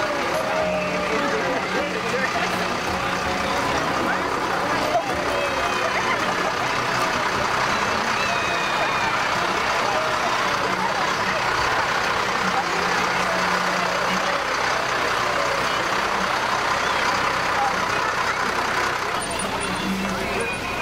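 Fire truck engine running in a steady low hum as the truck passes slowly at close range, under continuous crowd chatter.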